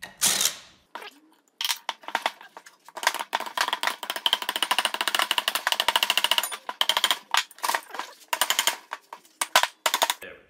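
Cordless impact driver hammering at the cylinder bolts of an air compressor pump: a rapid rattle of impacts over a motor whine. It is followed by a series of separate sharp knocks as the cast-iron cylinder block is worked loose from the pistons.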